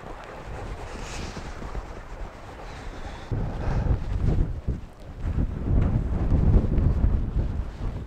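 Wind buffeting the microphone: a gusty low rumble that rises and falls, getting louder about three seconds in.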